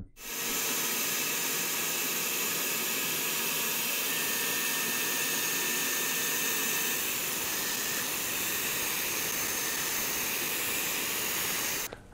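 Atezr diode laser engraver running a cutting job on plywood: a steady, even hiss of moving air from the machine. A faint high whine joins in for a few seconds in the middle.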